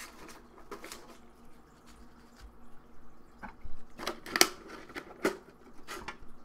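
Rustling and scattered sharp clicks and knocks as a Pokémon trading card tin and the cards and packs inside it are handled; the loudest knocks come about four seconds in.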